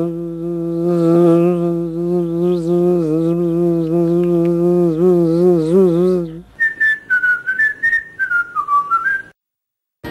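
Cartoon soundtrack: a loud, low, steady buzzing drone with a slightly wavering pitch, then about six and a half seconds in a short tune of quick high whistled notes, rising and falling, that stops suddenly.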